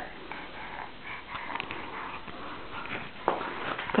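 A baby's snuffly breathing and sniffs through a runny nose, with scattered small clicks.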